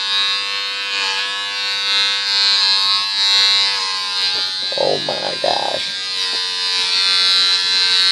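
Electric hair clippers running with a steady buzz while cutting a man's hair.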